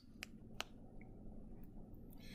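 Quiet room tone with a faint steady hum, broken by two small sharp clicks in the first second.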